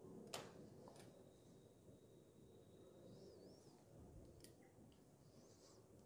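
Near silence: faint room tone with a few faint clicks, the clearest about a third of a second in.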